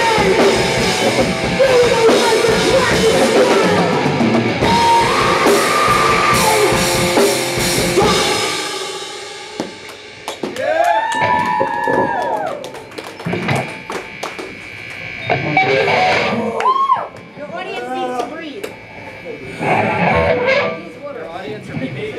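Live rock band with drum kit, guitars and vocals playing loud until the song ends about eight seconds in and dies away. Loud shouts and long whoops follow, among scattered drum and cymbal hits.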